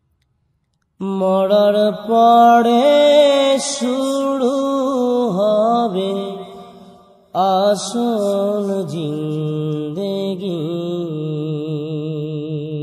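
A solo voice singing a drawn-out, wavering melodic line of a Bangla Islamic song, with no instrument heard. It comes in about a second in, fades near the middle, and starts again straight after.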